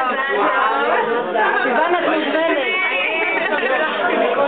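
A group of people chattering, several voices talking over one another at once.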